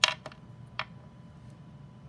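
Plastic cap of a Copic alcohol marker pulled off with a sharp click, followed by two lighter clicks.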